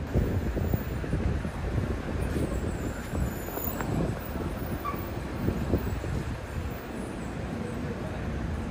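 City street ambience: a steady low rumble of passing traffic.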